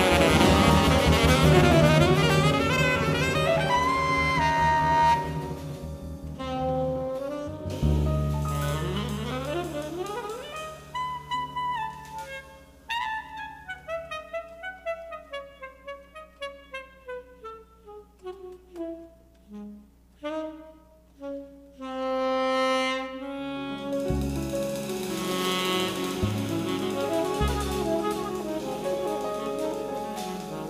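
Live jazz quartet with tenor saxophone lead. After about six seconds the bass and drums drop out and the tenor saxophone plays alone in quick runs of notes, then the bass and cymbals come back in near the end.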